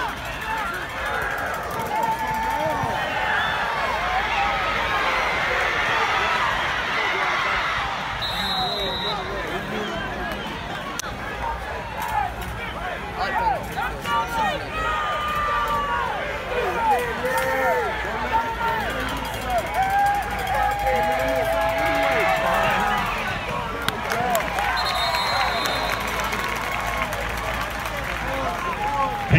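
Football crowd of spectators talking and shouting over one another, with a few drawn-out yells about twenty seconds in.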